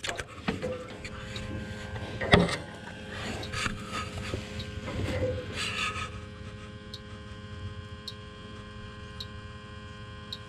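Handling noise inside an air-handler cabinet: knocks and rubbing against metal and refrigerant lines, one sharper knock about two seconds in, over a steady hum. After about six seconds the handling stops, leaving the hum and faint regular ticks about once a second.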